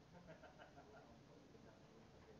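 Near silence: faint outdoor room tone, with a few faint short chirp-like calls from an animal in the first second.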